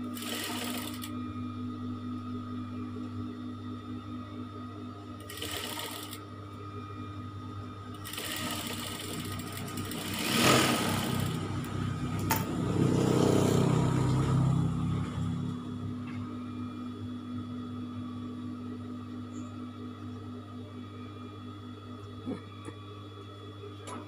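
Industrial single-needle lockstitch sewing machine with its motor humming steadily, and several short runs of stitching as fabric is fed through. The loudest and longest run comes around the middle.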